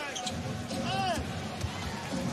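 Basketball game sound in an arena: a ball being dribbled on the hardwood court over steady crowd noise, with a brief voice about a second in.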